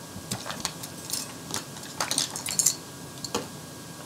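Makeup products clicking and clinking against one another as hands feel through a pile of them in search of the next item: a scatter of short, light clicks, busiest about two seconds in.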